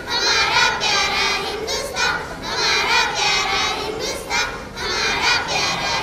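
A children's choir singing together, in sung phrases separated by short breaks.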